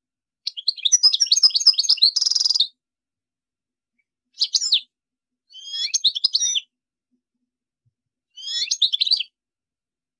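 European goldfinch singing: a long, fast twittering phrase that ends in a buzzy, nasal note, then three shorter twittering phrases with pauses of about a second between them.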